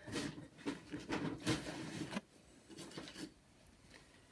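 Multi-purpose compost being pressed down by hand in a pot and scooped: soft rustling and scraping for about two seconds, then a few lighter rustles that die away.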